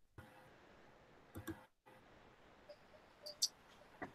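Faint room noise from an open microphone, with a few soft clicks: two about a second and a half in and two more near the end.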